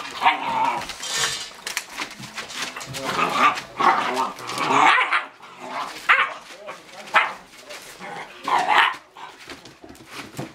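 Great Dane puppies barking during rough play: a string of short barks, with the loudest outbursts near the middle and toward the end.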